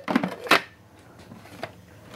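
Plastic lid being fitted and snapped onto a small food processor bowl: one sharp click about half a second in and a fainter click later.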